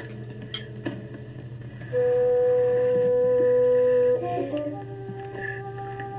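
Film-score music from an old black-and-white film soundtrack: a single loud note is held for about two seconds, starting about two seconds in, then gives way to softer sustained notes. A steady low hum runs underneath.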